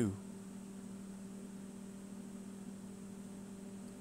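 Steady electrical hum, low and even, with a faint high-pitched whine above it.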